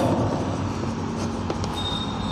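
Chalk writing on a blackboard, scratching over a steady background hiss, with a thin high-pitched tone coming in near the end.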